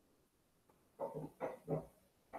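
A dog barking: three short barks in quick succession about a second in.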